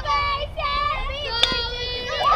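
Young girls' high voices chanting a sing-song softball cheer, with a single sharp knock of a bat meeting the softball about one and a half seconds in.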